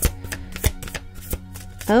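Deck of tarot cards being shuffled by hand: about four sharp, irregularly spaced slaps of cards against each other.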